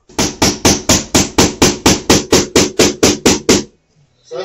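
Claw hammer striking a nail, fast and even at about four blows a second, some fifteen blows in all, then stopping.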